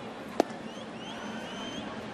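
An 86 mph pitch popping into the catcher's mitt: one sharp smack about half a second in, taken without a swing. Behind it the steady noise of a ballpark crowd, with a few faint rising whistles.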